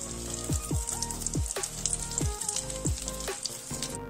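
Batter fritters with ham, cheese and tomato frying in hot vegetable oil in a pan, a steady sizzle full of fine crackles, with the first side done and the fritters being turned over.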